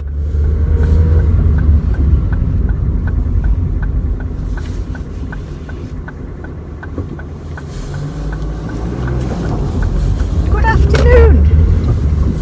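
Car engine and road noise heard from inside the cabin while driving: a steady low rumble, with a regular light ticking through the first two-thirds. A short voice sound comes near the end.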